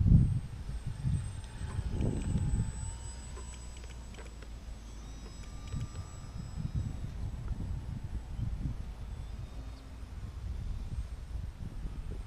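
Wind buffeting the microphone in low gusts, with the faint, wavering drone of a radio-control biplane's motor flying high overhead.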